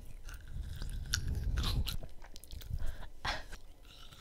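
A large green grape being bitten and chewed right up against a microphone: a string of short, sharp crunches and mouth clicks.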